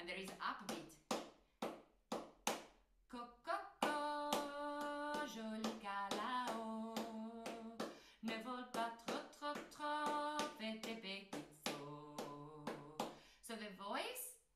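Body percussion: sharp hand claps and slaps in a syncopated rhythm, with a woman singing a melody over them from about four seconds in.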